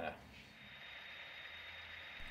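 Quiet room tone: a faint steady hiss, with a low hum coming in near the end.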